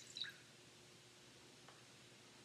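A few brief drips and splashes of water into a foot-washing basin in the first moment, then near silence with one faint tick.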